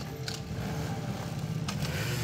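Small motorcycle or scooter engine idling with a steady low putter, with a couple of brief clicks from the scooter being handled.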